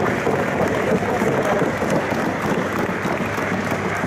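Crowd applauding steadily.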